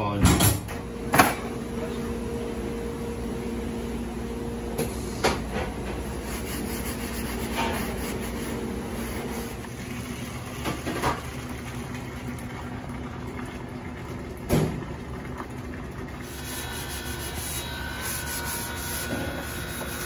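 Stainless-steel door of a commercial hood-type dishwasher pulled shut with two metal clanks, then the machine running with a steady hum. A few single knocks follow later.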